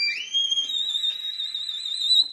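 Violin sliding up into a very high note and holding it with vibrato.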